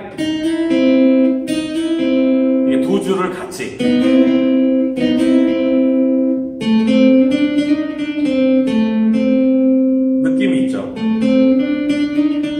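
Acoustic guitar playing a single-note melodic ad-lib phrase in C major, notes ringing on and sliding from one pitch to the next, with a couple of brief scratchy string noises.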